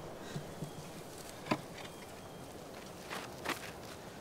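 Faint outdoor stillness broken by a few soft knocks and scuffs as a woman handles a rope and clay water jar on a stone well: one clear knock about a second and a half in, and two more near the end.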